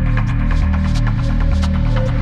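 Hypnotic deep techno: a dense, pulsing bass drone in a repeating pattern under a steady run of ticking hi-hats, with a thin held tone in the middle.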